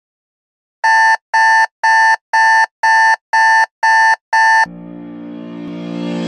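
Electronic alarm clock beeping: eight short, identical high beeps, about two a second, then a sustained musical chord swells in near the end.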